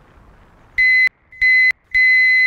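Electric horn of an Åska speed pedelec, set off by its handlebar button: two short high-pitched single-tone beeps, then a third, longer blast starting just before the end. It is really an awful lot of noise.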